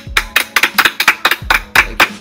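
Two people clapping their hands over a video-call connection: quick, sharp claps, about six a second, with a few low thuds among them.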